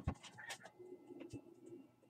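A bird's low call lasting about a second, preceded by a few faint clicks.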